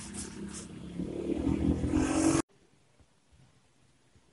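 A motor vehicle's engine, growing louder, then cutting off suddenly about two and a half seconds in.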